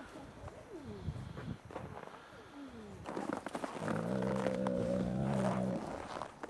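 Gray wolf growling: a low, steady growl of nearly two seconds starting about four seconds in, after a couple of short falling calls. It is a dominance and guarding growl at a rock the wolf is defending.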